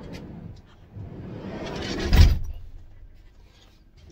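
A camper van door being pulled shut: a rubbing noise that builds, then a loud slam as it closes, about two seconds in.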